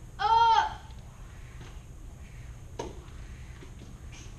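A boy's kiai: one short, high shout that rises and falls in pitch. A light thud follows near the end.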